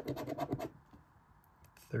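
Scratch-off lottery ticket being scratched in a quick run of short scraping strokes, about a dozen in under a second, then a few lighter scrapes.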